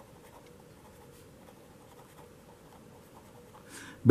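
Faint scratching of a felt-tip marker writing words on paper.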